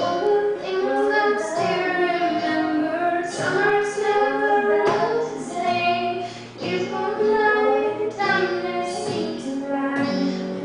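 A young woman singing a pop-rock ballad, accompanied by a strummed acoustic guitar; the voice comes in suddenly right at the start.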